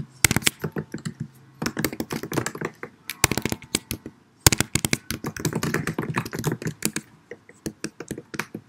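Typing on a computer keyboard: rapid key clicks in several bursts separated by brief pauses.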